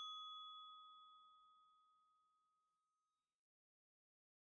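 The fading tail of a single bright, bell-like chime, an added sound effect that dies away over about the first second and then gives way to silence. The chime cues the listener's turn to repeat the word.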